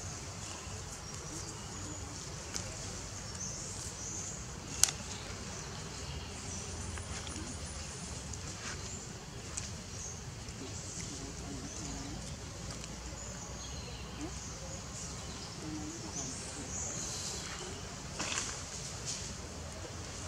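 Steady low outdoor background noise with one sharp click about five seconds in and a few faint rustles near the end.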